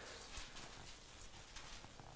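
Faint rustling and a few light taps as the pages of a Bible are turned.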